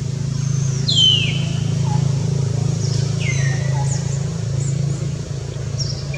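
Infant long-tailed macaque crying: two high squeals that fall in pitch, about two seconds apart, with faint short chirps around them. A steady low hum runs underneath.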